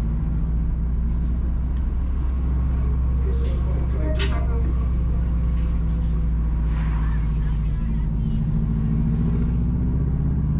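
Car engine and road noise heard from inside the moving car, a steady low drone. An oncoming car goes by with a brief rush around seven seconds in.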